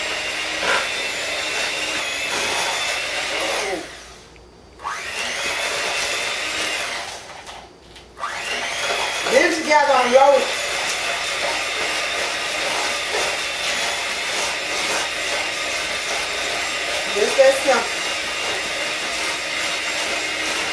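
Electric hand mixer running at a steady pitch, its beaters working cream cheese and sugar in a bowl. It stops briefly about four seconds in and again around seven to eight seconds, then runs on.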